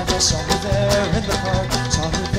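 A live band playing an instrumental passage: drums keep a steady beat under guitars and banjo. Over them runs a lead melody with sliding, bending notes.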